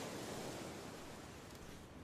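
Ocean surf: a steady wash of breaking waves, swelling slightly near the start and easing off toward the end.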